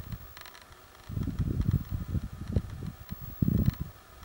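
Low, irregular rumble of wind and handling noise on a handheld camera's microphone.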